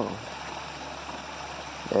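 A small woodland stream and waterfall running with a steady, even rush of water.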